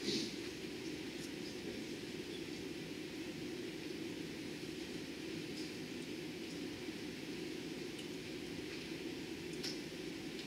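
Steady low room noise in a quiet meeting room: an even, hum-like rumble with a fainter hiss above it, broken only by a few faint clicks.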